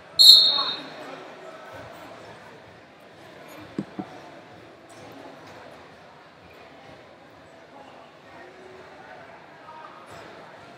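Crowd chatter echoing through a large tournament gym. In the first half-second there is a loud, shrill, high-pitched blast, and about four seconds in there are two quick dull thumps.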